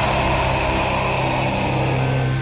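Live symphonic metal band holding a steady low droning chord, with a hissing wash above it and no vocals.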